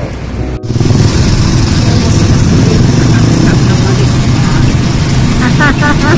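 Riding a motor scooter along a street: a small engine running under loud wind and road rumble on the microphone, starting abruptly about half a second in.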